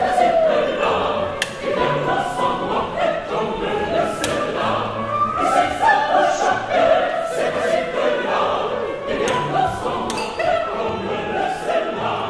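Mixed opera chorus of men and women singing a lively ensemble together, with a couple of sharp knocks, one about a second in and another about four seconds in.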